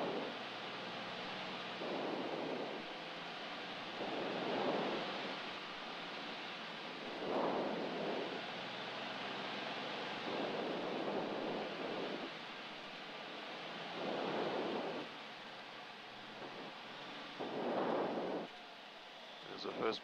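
Steady engine and airflow noise inside the cabin of a single-engine light aircraft on final approach at reduced power, swelling louder briefly every few seconds.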